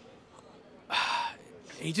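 A man's short, breathy gasp of laughter about a second in, a sharp noisy intake rather than a voiced laugh, with a spoken word starting near the end.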